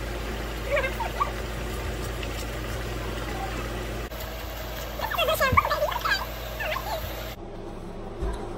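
Kitchen faucet running steadily while wet hair is rinsed under it, with brief vocal sounds from the person about a second in and again around five to seven seconds in. The water noise stops near the end, leaving a quieter room background.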